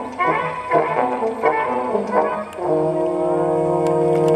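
Music: a quick run of short, changing notes, then a long held chord that starts about two-thirds of the way in.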